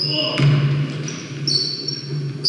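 Basketball play on a hardwood gym floor: sneakers squeaking in short high squeals near the start and again from about one and a half seconds, with a ball bouncing about half a second in.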